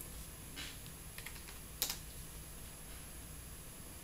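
A few light keystrokes on a computer keyboard, the sharpest about two seconds in.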